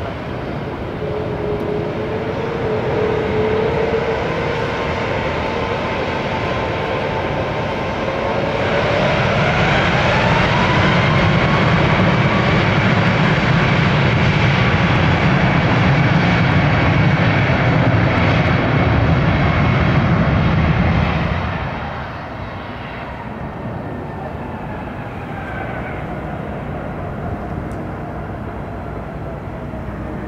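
Boeing 737 MAX 8's CFM LEAP-1B turbofans spooling up to takeoff thrust about a third of the way in, the whine rising as the noise gets louder. About two-thirds of the way in the sound drops sharply and a falling whine follows as the engines wind back down, as in a rejected takeoff.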